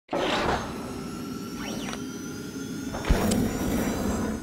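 Animated logo intro sting made of whooshing swishes over steady electronic tones, with a deep thud about three seconds in.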